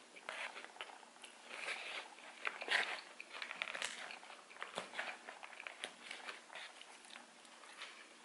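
Close-up chewing of crisp lettuce and shredded carrot salad: an irregular run of small crunches and wet mouth clicks.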